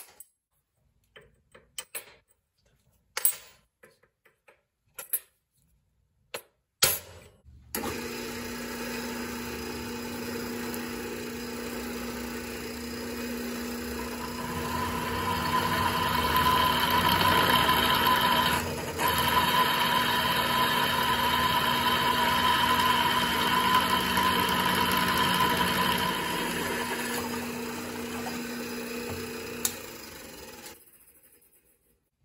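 A few sharp taps of a hammer on a center punch. Then a drill press starts and a twist drill cuts into a steel plate: a steady motor hum, with a high whine over it while the bit is cutting, broken once briefly. Near the end the cutting sound fades and the press runs down and stops.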